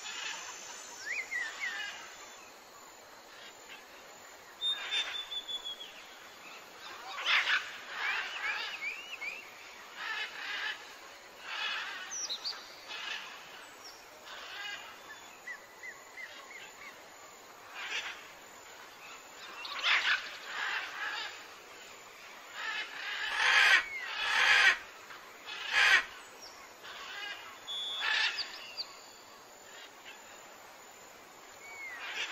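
Mixed bird calls: short chirps and brief whistles, some gliding in pitch, scattered throughout, with a run of loud, harsh squawks about 23 to 26 seconds in.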